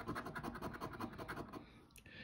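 A coin scratching the coating off a scratch-off lottery ticket in quick, rapid back-and-forth strokes that stop shortly before the end.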